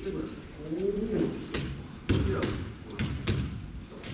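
An aikido partner thrown to the tatami mats: a loud thump of the body landing about two seconds in, with several sharper slaps and knocks of hands and feet on the mats around it. A short murmur of voice comes about a second in.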